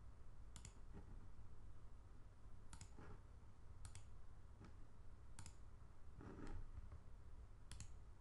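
Faint computer mouse clicks: about five sharp clicks spaced unevenly over several seconds.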